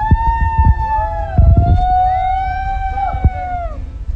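Long held sung notes, several overlapping one another and each gently rising and falling in pitch, over low rumbling and a few thumps.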